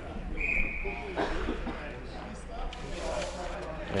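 Ice rink ambience with faint, distant voices of players and onlookers, and a short high whistle about half a second in, most likely the referee signalling the start of the shootout attempt.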